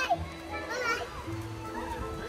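A toddler's short, high, wavy squeal about a second in, with faint background music under it.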